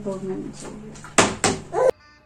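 Plastic water bottle landing on a table and bouncing: two sharp knocks about a third of a second apart, over voices.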